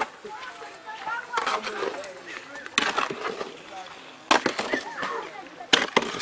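A plasterer's trowel working wet mortar for a rough-cast wall finish: four sharp strokes, about a second and a half apart. Faint voices behind.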